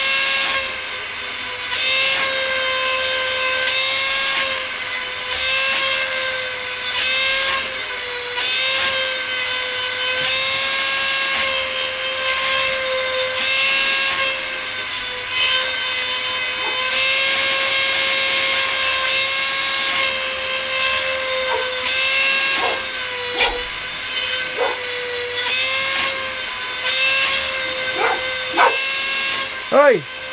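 Dremel rotary tool with a diamond grinding stone sharpening a chainsaw chain: a steady high whine that dips slightly under load, with a short grinding pass on each cutter, one after another about every second. A dog barks several times in the last several seconds.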